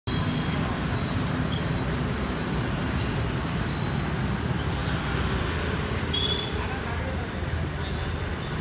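Steady roadside traffic rumble with voices in the background.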